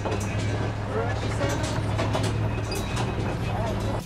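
Engine of an open-sided tour truck running steadily as it drives, a constant low hum, with people talking over it.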